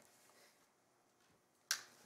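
Quiet room tone, then a single sharp click about three-quarters of the way through that fades within a fraction of a second.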